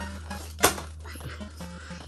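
A single sharp click of plastic toy dinosaur pieces being snapped together, about two-thirds of a second in, over quiet background music and a low steady hum.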